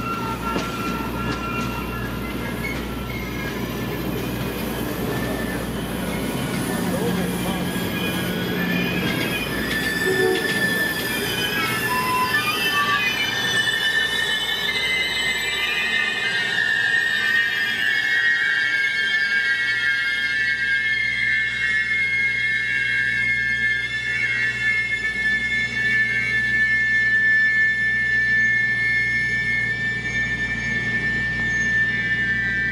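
Excursion train of F-unit diesel locomotives and passenger cars rolling past: a low diesel rumble in the first part gives way, from about halfway, to steady high-pitched wheel squeal that lasts to the end.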